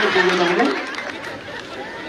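A man's voice through a microphone holding one drawn-out word over crowd chatter; the chatter dies down in the second half.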